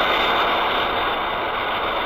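Ultraman flight sound effect: a steady jet-like rushing hiss with a thin high whine, slowly fading.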